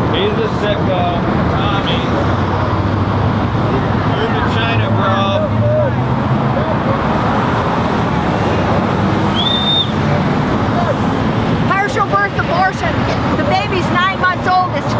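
Road traffic passing through an intersection: a steady wash of car engine and tyre noise, with scattered voices and a brief high tone just before ten seconds in.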